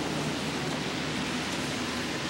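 Steady hiss of city traffic on a rain-wet street: tyres on wet road, with a low hum of engines underneath.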